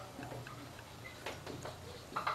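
Marker pen writing on a whiteboard: faint, irregular taps and scratches of the felt tip as letters are written, over a low steady hum.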